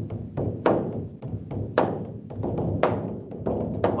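Percussion-only music played on drums: a fast, dense run of drum strokes with a harder accented hit about once a second.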